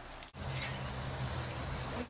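Chicken breasts sizzling on a stainless gas grill: a steady hiss with a low hum under it, starting about a third of a second in after a brief stretch of quiet room tone.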